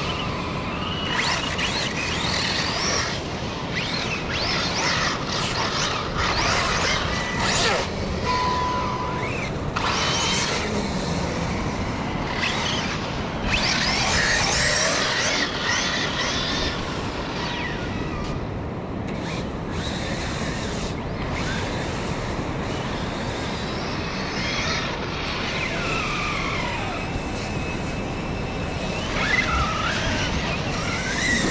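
Electric RC trucks' brushless motors whining up and down in pitch as they accelerate and slow, heard over a steady rushing noise of surf and wind.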